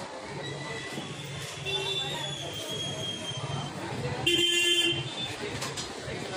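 A vehicle horn honks once, briefly, a little over four seconds in, over the murmur of voices on a busy street.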